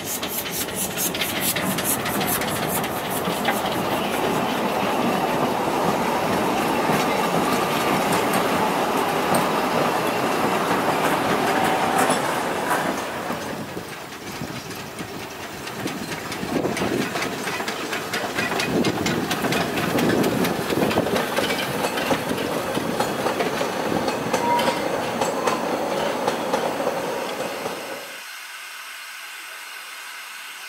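Narrow-gauge steam locomotives working passenger trains: steam hissing and the carriages clattering along the track. The sound dips briefly about halfway through as a second train takes over, and near the end it drops to a quieter steady hiss.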